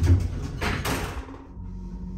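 Elevator doors sliding shut, with a thud at the start. About a second and a half in, a steady low hum begins: the hydraulic pump motor of a Burlington hydraulic elevator starting to raise the car.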